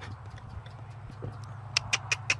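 A horse's hooves knocking on a horse-trailer ramp: a quick run of sharp knocks near the end, over a steady low hum.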